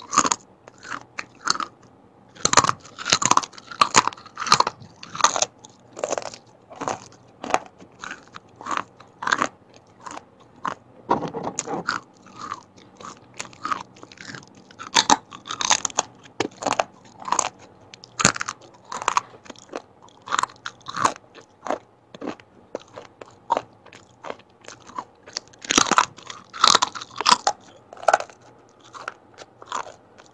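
Close-miked biting and chewing of crisp fried chips, fried plantain chips among them: a dense run of sharp crunches and crackles, with several louder flurries of bites.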